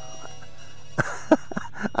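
Eachine QX95S micro quadcopter hovering low, its brushed motors giving a steady hum with a thin high tone from its onboard beeper. The beeper is sounding unintentionally, which the pilot puts down to wrong beeper settings in Betaflight. A few short sounds near the end, then a voice.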